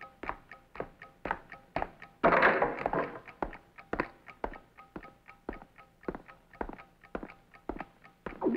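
Cartoon sneaking music: a plucked, tapping beat at about four to five taps a second over faint held tones, swelling louder a little over two seconds in.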